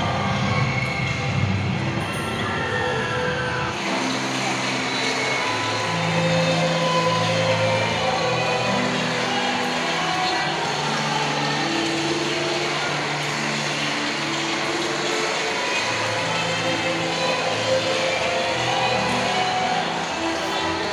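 Film soundtrack music playing over loudspeakers in a large hall, settling into long held low notes about four seconds in; a voice is heard over it in the first few seconds.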